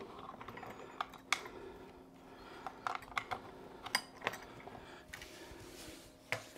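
Faint, irregular clicks and taps of computer keyboard keys, about eight in the few seconds, over a low steady hum.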